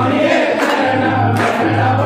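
Group devotional bhajan singing with musical accompaniment: several voices holding sung notes over a steady low drone.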